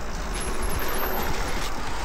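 Mountain bike descending fast on a dirt trail: tyres on the dirt and short knocks and rattles over bumps, under a steady wind rumble on the camera microphone.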